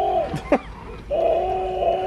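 Battery-powered walking plush dinosaur toy whirring as its small motor and gears drive it to walk. The steady whirring stops about half a second in, gives a short click, and starts again about a second in.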